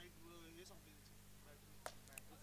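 Near silence: faint distant voices, and one short faint click near the end.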